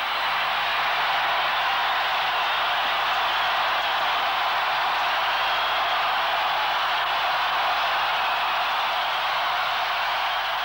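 Steady, unchanging hiss of noise with no music, voices or other events in it, typical of tape noise from an old videotape recording.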